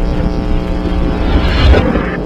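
Video logo sting: a loud, low rumbling sound effect under a steady held tone, swelling toward the end.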